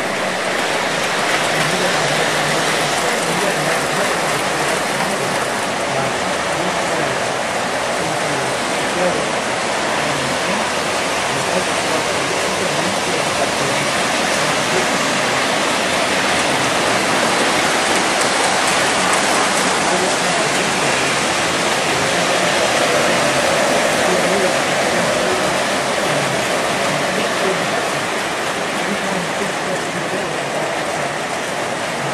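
O-gauge model trains running on three-rail track: a steady rushing rumble of metal wheels and electric motors that holds level throughout.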